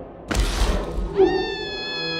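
Horror-film soundtrack: a sudden noisy crash, then a long, high, drawn-out cry that holds one pitch and sinks slightly before cutting off.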